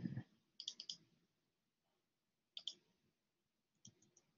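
Near silence broken by faint computer mouse clicks in small groups: three in quick succession just under a second in, two more past the middle, and one near the end. A brief dull noise sits at the very start.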